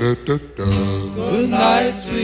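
1950s doo-wop vocal group recording: voices singing held harmony notes, with a short break in the sound early on before the chords come back.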